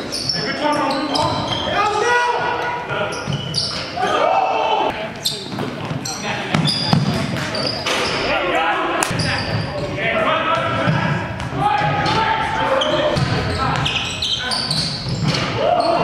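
Basketball game on a hardwood gym court: the ball bouncing and players' shouts and calls, echoing in the large hall.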